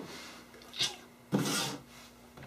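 Two brief rubbing noises: a short one about a second in, then a longer, louder one soon after.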